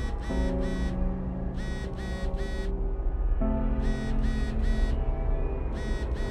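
Electronic beeping in groups of four quick beeps, each group repeating about every two seconds, over a low, dark ambient drone.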